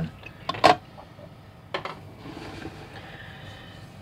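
Diecast model cars being handled and set down on a display turntable: a sharp click about half a second in and a lighter one near two seconds, then only faint background noise.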